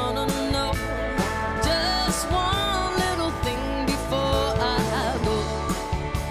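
Live band playing a mid-tempo song with drums and electric guitars over a steady beat.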